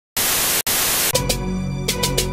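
Loud television-static hiss with a split-second cut about half a second in. A little after a second, an electronic intro sting takes over: a steady low drone and held tones under sharp, irregular clicking hits.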